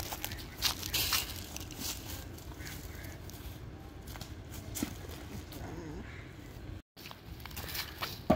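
Footsteps and rustling on dry fallen leaves: scattered crackles and crunches over a low outdoor rumble, with faint voices now and then.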